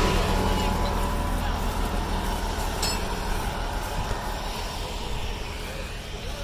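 Large farm tractor's diesel engine idling nearby, a steady low hum that grows gradually fainter. There is a single sharp click about three seconds in.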